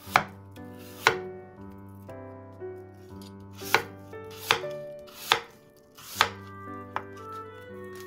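Kitchen knife slicing through an apple and knocking down onto a wooden cutting board, about six sharp cuts at uneven intervals, over soft background music.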